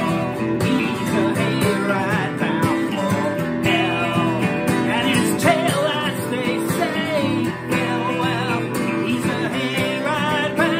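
Acoustic guitar strumming together with a clean electric guitar, with a man's singing voice over them.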